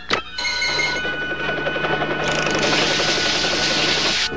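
Cartoon sound effect: a sharp click as a remote-control button is pressed, then a steady rushing hiss of spraying rinse water with a few thin steady tones over it, growing louder about two seconds in.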